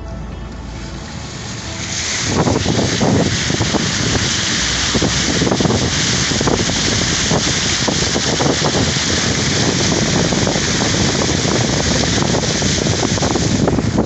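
Floodwater rushing loudly, a continuous churning noise that sets in about two seconds in and cuts off just before the end.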